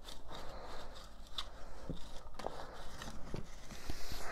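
Hands crumbling and scraping soil inside a plastic tote, a soft crackly rustle with a few scattered sharp ticks.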